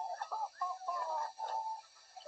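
Children's voices from a TV skit, their pitch sliding up and down, sounding thin and muffled as if played through a television's speaker.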